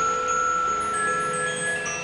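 Background music of soft chime-like tones, several bell notes ringing long and overlapping.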